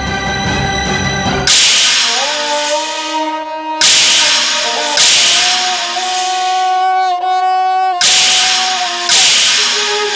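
Dramatic TV-serial background score: held sustained tones, cut through by five sudden loud noisy hits, each fading away over a second or so.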